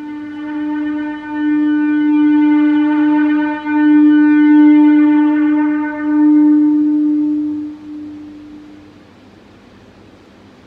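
Electric bass played through effects as one held, horn-like note that swells up and falls back in several waves, then fades away about nine seconds in.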